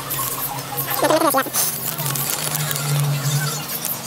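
A small clear plastic bag crinkling as it is handled and opened, with light clinks of the small plastic cube parts inside it.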